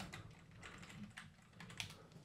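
Computer keyboard being typed on: a quick run of faint, short keystrokes.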